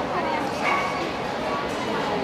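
A dog giving short high yips, the clearest a little before halfway through, over people talking.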